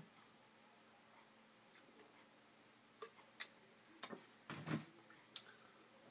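Near silence, with a few faint scattered clicks in the second half and one soft, slightly longer knock, from a man drinking beer out of a glass mug and setting it down.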